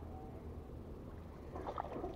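Water splashing near the end as a hooked tilapia thrashes at the surface on the line.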